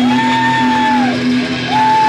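Live garage-punk band's sustained closing sound: a steady low note drones on under two long, high held tones of about a second each, each sliding up as it starts and dropping away as it ends.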